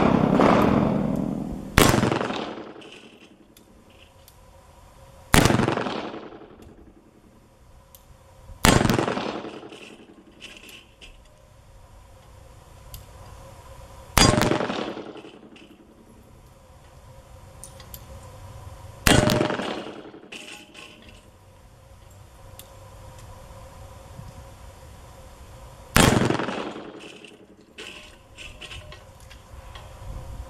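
Six shots from a .41 Magnum double-action revolver, fired singly three to seven seconds apart, each with a long echo trailing off.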